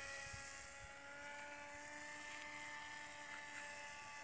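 Radio-controlled paramotor trike's motor and propeller making a faint, steady whine as the model flies a low pass.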